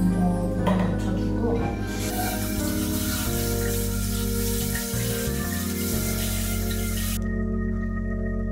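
Water running from a bathroom sink tap as bangs are rinsed under it, starting about two seconds in and stopping abruptly near the end. Background organ music with steady held chords plays throughout.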